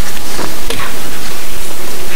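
A loud, steady hiss of noise spread evenly across the whole range, with no tone or rhythm in it.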